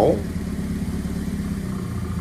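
Honda D16A6 single-cam 16-valve four-cylinder, built non-VTEC with a Bisimoto Level 2.X regrind cam and 13.2:1 compression, idling steadily while still warming up after a cold start.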